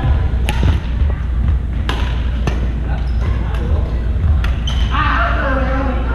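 Badminton rackets hitting a shuttlecock during a rally, sharp pops spaced about half a second to a second apart, over a steady low rumble. Near the end the hits stop and people's voices take over.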